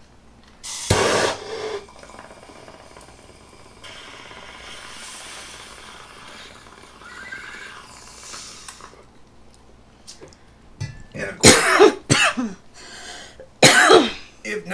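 A person coughing: one cough about a second in, then several coughs in quick succession near the end.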